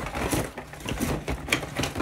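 Small cosmetic lipstick tubes clicking and knocking together as they are handled in the hand: an irregular run of light clicks.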